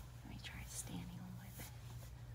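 A woman's soft, whispered murmur over a steady low hum.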